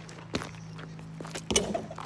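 A basketball player's sneaker footsteps on an asphalt driveway: two thumps about a second apart, the second louder, over a steady low hum.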